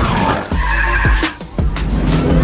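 Film soundtrack of music and sound effects, with a sharp cut about half a second in, followed by a high screech and falling glides before the mix picks up again.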